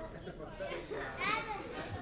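Faint children's voices talking in a room, with one short high-pitched child's utterance about a second and a quarter in.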